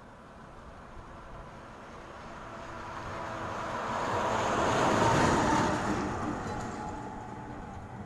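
A vehicle passing by on the road, growing louder to a peak about five seconds in and then fading away.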